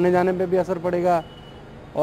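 A man speaking, breaking off a little over a second in; the pause leaves only faint steady background noise with a thin high tone.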